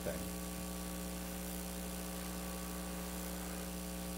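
Steady electrical mains hum, a low constant drone with no change through the pause in speech.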